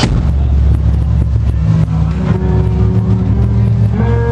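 Rock band starting a song, recorded loud and overloaded: a heavy, distorted low bass drone with light regular ticks about three times a second, and guitar notes joining about two seconds in.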